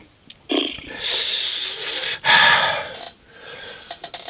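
A man breathing hard and sniffing in two long, noisy breaths, the second louder, from the burn of very hot sauce he has just eaten.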